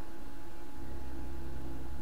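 A steady low drone with hiss and a faint hum, no voices; a deeper rumble comes in under it about a second in.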